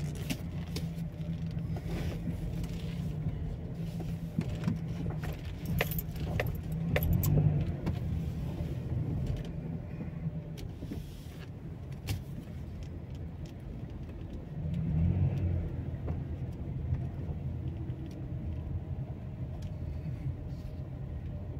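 Car engine and road noise heard from inside the cabin at low speed, a steady low hum that swells twice, about seven and fifteen seconds in, with small clicks and rattles scattered through it.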